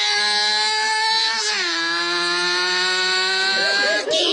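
High-revving motorcycle engine held at a high, steady pitch, which dips about a second and a half in, then slowly climbs again until it cuts off suddenly.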